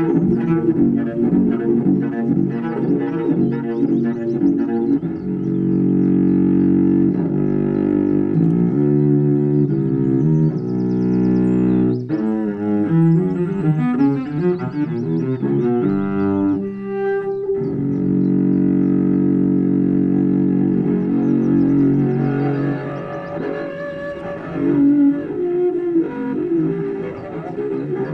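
Solo cello, bowed, playing an improvised piece: mostly long held low notes, with a stretch of quicker changing notes in the middle, and softer near the end.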